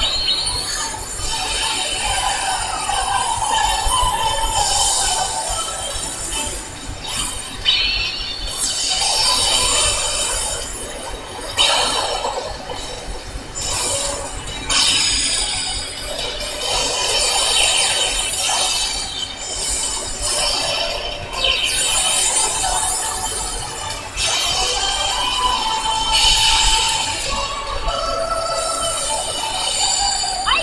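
Cartoon magical transformation-sequence soundtrack: music laced with bright, glassy sparkle and chime effects that swell and fade every couple of seconds.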